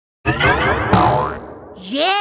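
Edited logo-intro sound effects. Two swooping hits start suddenly about 0.7 s apart, their pitch falling. Near the end a single tone begins to rise.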